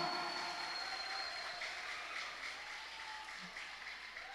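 Faint applause from an audience in a hall, dying away.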